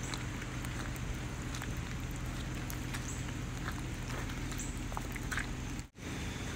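Outdoor ambience at a rain-filled pond: a steady wash of rainwater draining and trickling, with scattered small drips and ticks, over a steady low hum. The sound drops out briefly just before the end.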